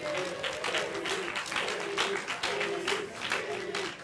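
Audience applauding, a dense patter of many hands clapping, with voices underneath.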